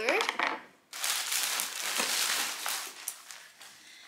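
Plastic shopping bag crinkling and rustling for about two seconds as hands rummage in it to pull out the next item.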